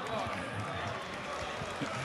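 Low, steady murmur of many voices from deputies in a large parliamentary chamber.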